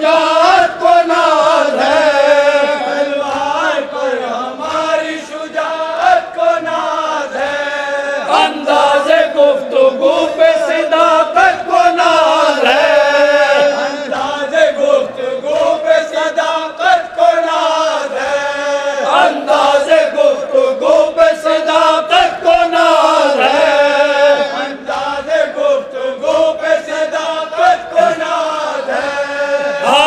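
A group of men chanting a noha (Shia lament) in unison, a lead voice amplified through microphones over the chorus. It goes in repeated sung phrases without a break.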